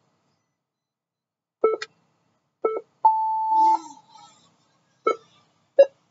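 RotorHazard race timer sounding the race start: short staging beeps about a second apart, then one long steady start tone about three seconds in.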